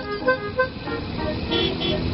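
A cartoon car's engine sound effect running and growing louder as the car approaches, under a light musical jingle of short notes.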